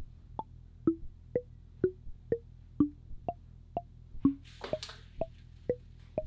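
Intellijel Plonk physical-modelling percussion voice, triggered by a Monome Teletype, playing short struck, wood-block-like notes at about two a second, evenly spaced. Each note lands on a random pitch drawn from a two-octave table of Western scale notes, so the line jumps about like a random melody.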